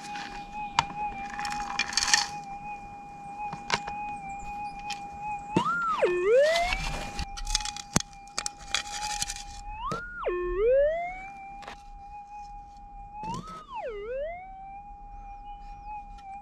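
Minelab GPX 6000 metal detector's steady threshold hum, broken three times by a target signal: the pitch swings up, drops sharply low and glides back. This is the detector sounding off on gold in the dirt passed over its coil. Gritty scraping and pouring of dirt comes between the signals.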